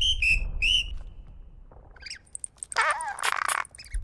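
Squeaky, whistle-like chirping vocal sound effects of animated cartoon insect characters: three quick rising chirps at the start, then after a pause a burst of wavering squeaky chittering in the second half.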